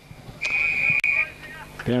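Umpire's whistle: one steady, high-pitched blast of just under a second, signalling the ball out of bounds for a throw-in.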